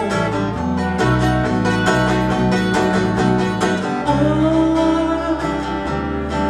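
Acoustic guitar strummed over an electric bass guitar playing held low notes, a live instrumental passage with no singing.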